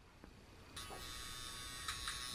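Manscaped Weed Whacker cordless nose hair trimmer coming on suddenly under a second in and running with a steady high-pitched buzz.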